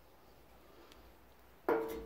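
A glass pepper shaker set down on a hard countertop: one sharp knock about one and a half seconds in, with a short ringing tone that fades.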